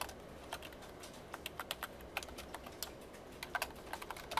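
Typing on a computer keyboard: a run of irregular keystroke clicks.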